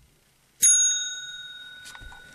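A single bright ding from a small bell about half a second in, ringing on and slowly fading.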